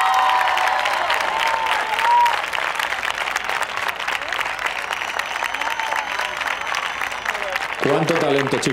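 A large audience applauding steadily, with cheering shouts over the first couple of seconds.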